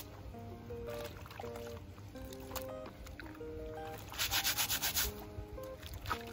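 A stiff scrub brush scrubbing a plastic basin, with a quick run of brisk back-and-forth strokes about four seconds in, over background music with a simple melody.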